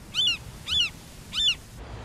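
A bird calling three times: short, high calls, each rising and then falling in pitch, about half a second apart.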